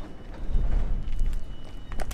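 Footsteps on paved ground as the camera is carried round the car, over a low rumble.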